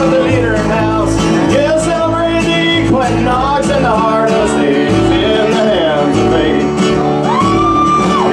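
Live band playing a country-style song just after the count-in: strummed acoustic guitar over a plucked upright bass keeping a steady beat of low notes, with drums ticking on top.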